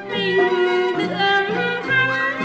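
Vietnamese chèo folk singing: a drawn-out, wavering vocal line over traditional instrumental accompaniment with bowed strings.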